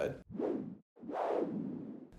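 A person's breaths close to the microphone: two breathy swells of air noise, a short one near the start and a longer one about a second in.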